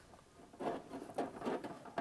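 Plastic wrestling action figures being handled on a toy wrestling ring: a string of light taps and rustles as the figures knock against the ring's ropes and mat, starting about half a second in.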